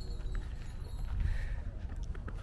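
Low rumble of wind and handling on a handheld phone's microphone, with a few light footsteps on a dirt path.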